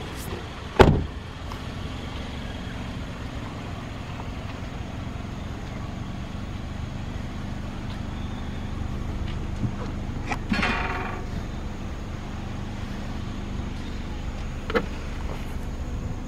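A Toyota Corolla Altis idling with a steady low hum. A car door shuts with a loud knock about a second in. About ten seconds in, a short rattling noise and then a click near the end come as the boot lid is unlatched and opened.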